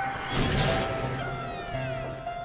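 Electronic trance track: a burst of noise swells up about half a second in and fades, with several pitches sliding downward through it, over a held synth note. The bass line drops out and comes back in near the end.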